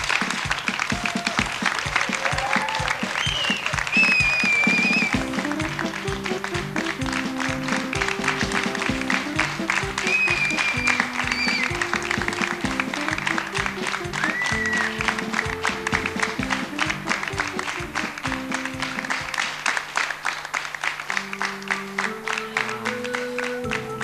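Studio audience applauding, joined about five seconds in by a synthesizer melody of stepped, held notes, with a few high whistled tones over the top.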